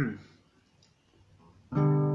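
Acoustic guitar: one chord strummed near the end, left ringing and slowly fading.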